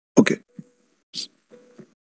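A single short, loud pop about a fifth of a second in, followed by a few faint, brief sounds.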